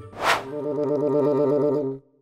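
Cartoon sound effects: a short whoosh, then a warbling musical sting, a held low chord that pulses rapidly before cutting off suddenly.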